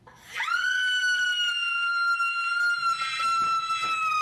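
A woman's long, shrill scream, sweeping up sharply at the start and then held on one high pitch that sags slightly as it goes on.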